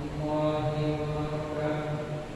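An imam chanting the prayer recitation aloud during congregational prayer: one man's voice holding long, steady melodic notes, which trail off near the end.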